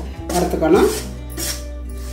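Metal spatula scraping and stirring dry rice flour in a stainless steel pan, a run of short scrapes in the middle.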